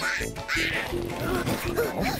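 Playful cartoon background music with a run of short, bouncy notes about two or three a second, and a brief high, squeaky cartoon-character vocal sound at the start.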